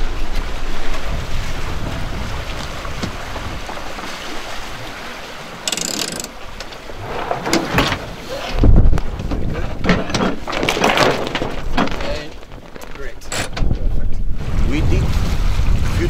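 Wind buffeting the microphone over the rush of a small sailing catamaran moving through the water, rising and falling in gusts, with one loud low thump partway through.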